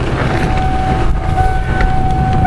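Motorhome engine idling with a low, steady rumble. A steady high-pitched tone sets in about a third of a second in and holds.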